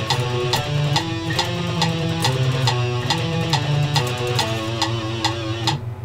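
Electric guitar playing a fast alternate-picked single-note exercise in sixteenth notes against a metronome click at 140 beats per minute. The playing stops just before the end, and the click carries on.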